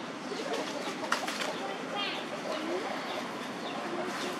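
Outdoor background with scattered short, high chirping animal calls, a quick trill about two seconds in, and a sharp click just after a second in.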